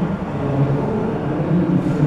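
A steady, low mechanical rumble with no speech over it.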